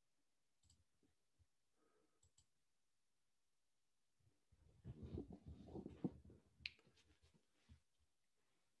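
Quiet room with a few faint clicks, then about two seconds of low knocks and rustling from a little past halfway, with a couple more clicks near the end.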